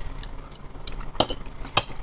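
A person eating a forkful of salad close to a clip-on microphone, with a few sharp clicks: one a little after a second in and another near the end.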